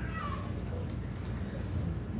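A brief high-pitched vocal sound falling in pitch at the very start, then a steady low room hum.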